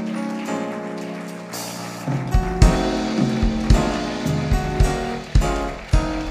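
Congregation applauding over church band music: held chords, with a drum beat coming in about two seconds in at roughly two hits a second.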